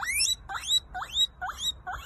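Guinea pig wheeking: a string of short squeaks, each rising sharply in pitch, about two a second.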